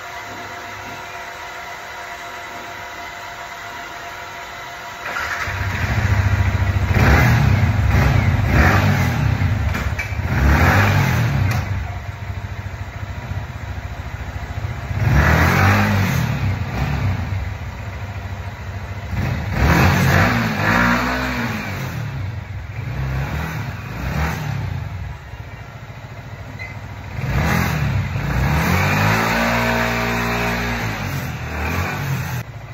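Yamaha R15 motorcycle engine starting about five seconds in, then being revved in repeated short blips while standing still, the last rev held longer near the end. It follows a faint steady hum.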